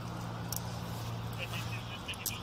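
A steady low hum, with a brief click about half a second in and faint, distant voices toward the end.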